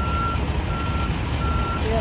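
A vehicle's reversing alarm beeping steadily: one high tone about three times in two seconds, with even gaps, over a low rumble.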